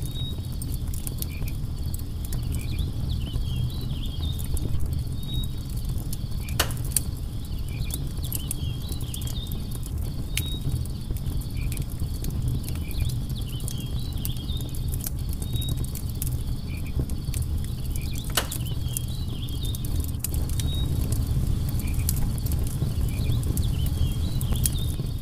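Wood campfire crackling, with a steady low rumble of flames, frequent small snaps and two louder pops, one about seven seconds in and one near eighteen seconds. Insects chirp in short, repeated calls above the fire.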